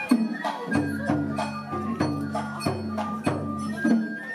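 Oyama-bayashi festival music played live: taiko drums striking a steady beat under bamboo flutes and the clink of small hand gongs.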